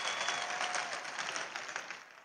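Applause from a large arena audience, fading away.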